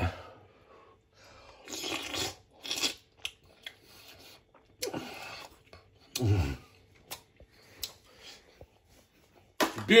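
A man eating a cooked mussel from its shell: chewing and mouth noises in short spells, with a brief hum from his voice about six seconds in.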